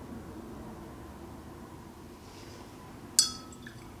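Faint room tone, then about three seconds in a single sharp clink that rings briefly: a paintbrush tapped against a hard container.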